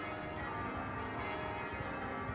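Church bells ringing, a steady wash of many overlapping ringing tones.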